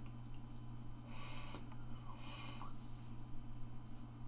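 A man breathing softly, two breaths a little over a second apart, over a steady low hum.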